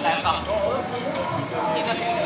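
Voices talking, with a few short taps or knocks mixed in.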